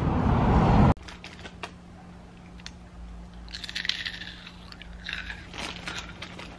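Street traffic noise cuts off abruptly about a second in, giving way to a quiet room with a low steady hum. Someone crunches on Cheetos, in two short bouts of crunching with scattered clicks between them.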